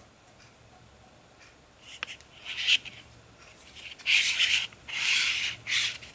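A click, then several short bursts of rubbing and scraping as a Kydex knife sheath with a webbing belt loop is handled and turned over in the hands. The first two seconds are quiet and the scrapes grow louder in the second half.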